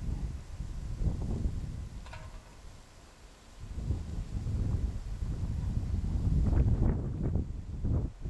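Wind buffeting the microphone: a gusting low rumble that eases about three seconds in and builds again toward the end.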